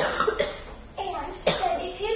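A person coughing, two short coughs about a second and a half apart, mixed with a woman's speech.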